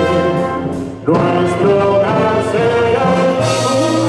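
Wind band with a prominent brass section playing an instrumental passage of a ballad. A held, wavering note fades out about a second in, then the band comes back in with full sustained chords.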